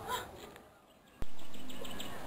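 The sound fades almost to silence, broken about a second in by a single sharp click at an edit cut between scenes, followed by faint outdoor background noise.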